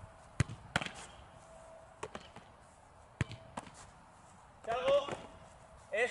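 Soccer balls thudding as they are struck and handled in a goalkeeper drill: five sharp thuds, in two quick pairs and one single, over the first four seconds. A brief voice near the end.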